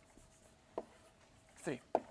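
Writing on a board, with a short tap just before a second in. A man's voice says "three" near the end, over a faint steady hum.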